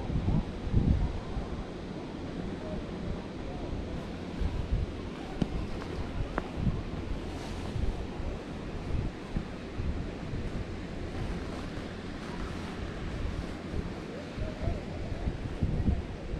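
Wind buffeting the microphone of a camera riding a chairlift: a steady rushing noise with irregular low rumbles.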